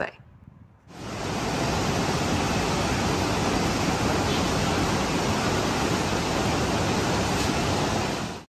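Steady rush of the fast, turbulent Parvati River's white water, fading in about a second in.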